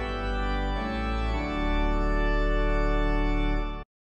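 Organ music: sustained full chords, changing twice early on, then cut off abruptly just before the end.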